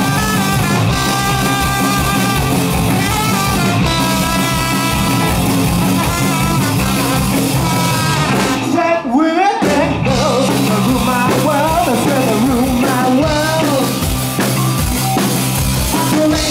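Live punk band with electric bass, electric guitar, drum kit and trumpet playing an instrumental section, with the trumpet playing the lead line. About nine seconds in, the drums and bass stop for about a second, leaving only a rising pitched line, and then the full band comes back in.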